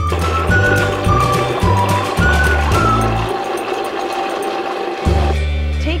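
A countertop blender running on a liquid mix of orange juice and coconut milk, a loud steady whir that shuts off about five seconds in. Background music with a melody and bass plays underneath.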